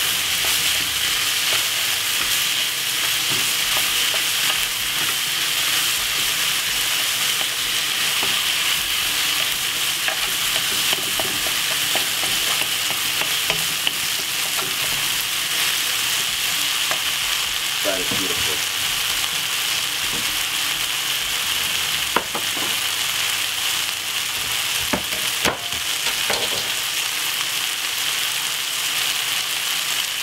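Sliced vegetables sizzling steadily in a hot wok while a wooden spoon stirs them. A few sharp taps of the spoon against the pan come in the last third.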